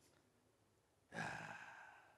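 A man's audible sigh into a handheld microphone, starting about a second in and fading away.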